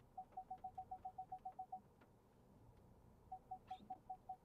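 Ford Puma's rear parking sensor warning beeping: rapid short beeps at one steady pitch, about seven a second, in two runs with a pause of about a second and a half between them. The sensors are detecting an obstacle behind the car.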